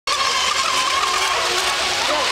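Radio-controlled model speedboat's motor running at speed across the water, a high, steady whine over the hiss of its spray.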